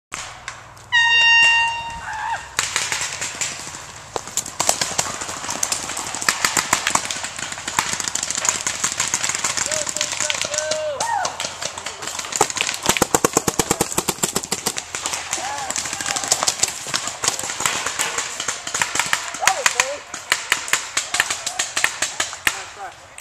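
A horn blast lasting about a second, then many paintball markers firing in rapid volleys, shots crackling almost continuously and thickest a little past the middle.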